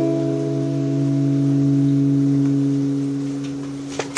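A single chord held on a Kurzweil PC88 stage keyboard, sustaining steadily through the PA and thinning slightly near the end.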